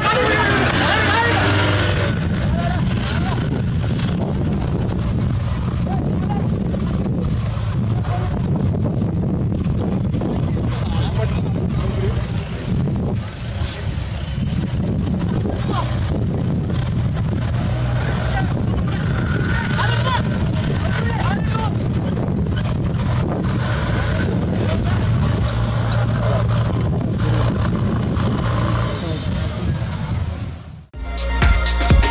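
Off-road 4x4 jeep engine running steadily at low revs, dipping briefly about halfway through, with spectators' voices over it.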